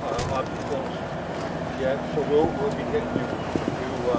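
Indistinct talk from several people walking together, with the scattered footsteps of a group on dry dirt ground.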